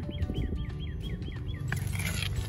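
A bird calling a fast, even run of short falling chirps, about six a second, that stops shortly before the end, over a low rumbling noise.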